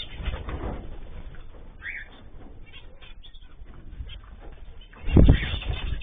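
Aviary cage birds calling, with scattered short chirps. About five seconds in comes a brief, loud burst of low sound.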